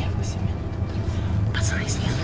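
Hushed whispering begins about one and a half seconds in, over a steady low drone.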